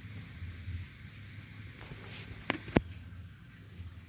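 Two sharp clicks about a quarter-second apart, a little past the middle, over a faint low background hum.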